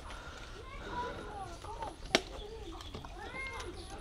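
Faint voices of people some way off, with one sharp click about two seconds in.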